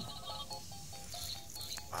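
A simple electronic tune of short beeping notes stepping up and down, played by a battery-powered musical walking toy.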